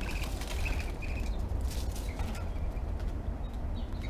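A few short, high bird chirps, heard near the start, about a second in and again near the end, over a steady rustle and low rumble.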